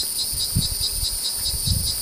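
Insects chirping in a steady, high-pitched pulsing drone, about four pulses a second, with a low rumble underneath.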